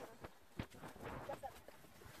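Faint crunching and scuffing of snow being dug and packed by hand, with a few soft knocks in the first second.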